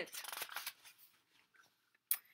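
A short, crackly rustle of a paperback book's pages being handled, fading out within the first second.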